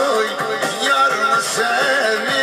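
A man singing a Turkish folk melody into a microphone, his voice wavering in ornamented turns, while he accompanies himself with plucked notes on a bağlama, the long-necked Turkish saz.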